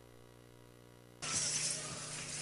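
Audio dropout in a streamed broadcast: for about a second only a faint steady electrical buzz, then the loud, noisy sound of the hall cuts back in abruptly.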